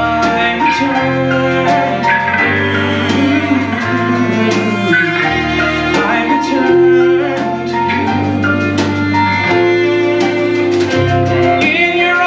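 Live band of piano, bass guitar, electric guitar, cello, violin and drums playing a musical-theatre song, with held string chords, a bass line changing note every second or so and regular drum and cymbal strikes. A male voice sings over it at times.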